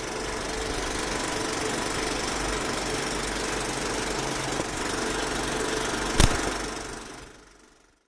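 Logo-reveal sound effect: a steady rumbling, hissing texture with one sharp hit about six seconds in, then fading out to silence near the end.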